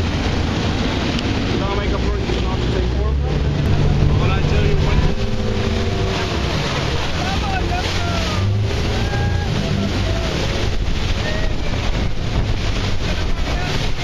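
Speedboat engine running under power over rough river water, with rushing water and wind buffeting the microphone; the engine swells louder about four seconds in. Short voice-like calls from the passengers come through the noise.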